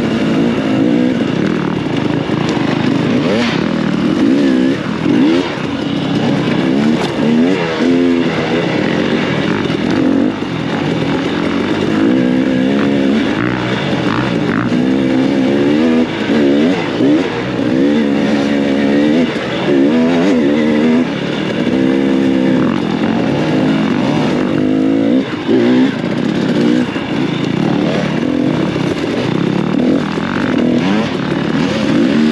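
Dirt bike engine riding off-road, its pitch rising and falling over and over as the throttle is opened and closed and gears change.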